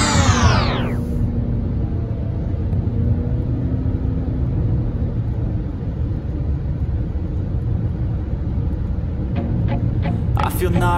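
Steady low road rumble of a car driving, heard from inside the cabin. In the first second a sound with many pitches slides steeply down and stops.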